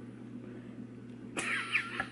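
A steady low hum, then a baby's short, high-pitched squeal about one and a half seconds in.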